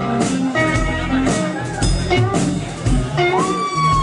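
Live rock band playing: an electric guitar plays held lead notes over drums keeping a steady beat. Near the end a long bent guitar note rises and then drops away sharply.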